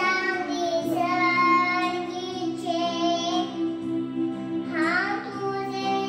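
A young girl singing into a handheld microphone, holding long notes with short swoops up between phrases.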